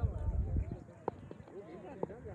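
Several people's voices talking and calling, with a low rumble through the first second and a few light knocks about a second in.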